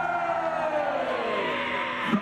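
A long, siren-like wail that arches up briefly and then slides slowly down in pitch for nearly two seconds.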